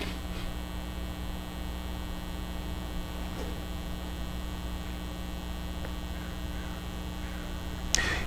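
Low, steady electrical mains hum with a faint hiss underneath, unchanging throughout.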